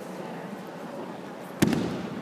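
Judo breakfall: the thrown partner lands on the tatami about one and a half seconds in with a single sharp slap of body and arm on the mat.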